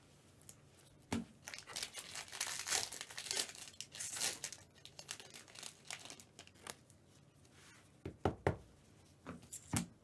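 A trading-card pack's foil wrapper being torn open and crinkled, a dense run of crackling from about a second in, followed near the end by a few sharp knocks as the cards are handled.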